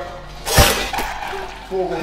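A heavy blow lands about half a second in: a single loud thump with a sharp crack, ringing briefly in the room. A lighter knock follows about half a second later.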